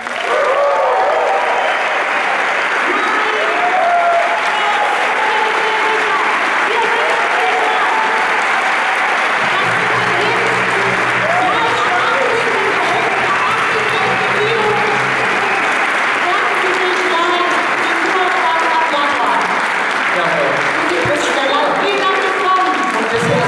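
Audience applauding and cheering: steady clapping with shouts and whoops over it throughout. A low steady hum comes in about ten seconds in and stops some six seconds later.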